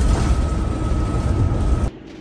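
Inside the cab of a diesel Class A motorhome driving on the interstate: a steady low rumble of engine and road noise with a thin steady whine above it, cutting off suddenly near the end.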